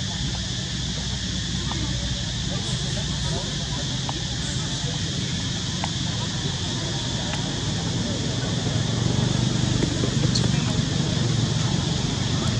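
Steady outdoor background noise: a low rumble with a constant high-pitched hiss over it, and a few faint ticks, growing slightly louder near the end. There are no clear calls from the monkeys.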